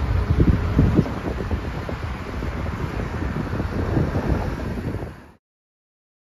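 Wind buffeting the microphone of a phone filming from a moving car on a freeway, over rumbling road noise. The sound cuts off abruptly to silence a little over five seconds in.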